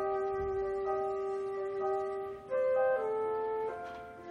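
Chamber orchestra playing a slow passage of long held notes, moving to a new chord about two and a half seconds in.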